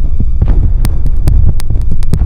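Loud dramatic background score: a deep, pulsing bass, joined about a second in by sharp ticking clicks a few times a second.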